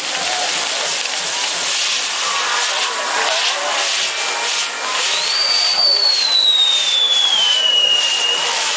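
Fireworks castillo burning: its spinning pinwheels hiss and crackle steadily. About five seconds in, a long whistle starts and falls slowly in pitch.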